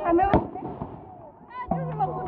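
A single firecracker bang about a third of a second in, over faint crowd voices. Music with a steady low tone starts near the end.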